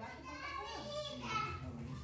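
Faint children's voices talking in the background.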